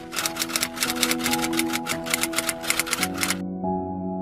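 Typewriter typing sound effect, a rapid run of key clicks, about seven a second, over soft background music; the clicks stop suddenly shortly before the end, leaving the music.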